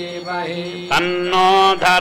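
Male priests chanting Sanskrit Vedic mantras during a temple abhishekam, syllable by syllable, then settling into one long held note in the second half.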